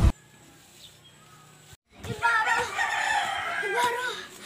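A rooster crowing, one long call starting about halfway in.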